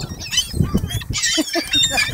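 A flock of gulls calling, many short high cries overlapping, growing denser in the second half, with wings flapping as birds lift off close by.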